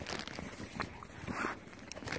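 Footsteps crunching in snow, a few irregular steps with one longer crunch about halfway through.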